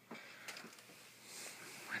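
Faint room tone in a small room, with a soft click about half a second in and a light rustle near the end. A man starts to speak right at the end.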